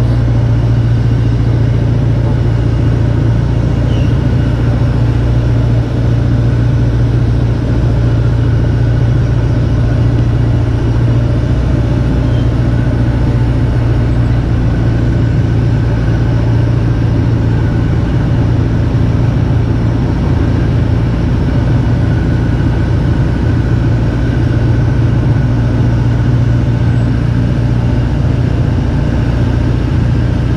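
Engine of a wooden Thai longtail boat running steadily while the boat is underway, a constant low drone.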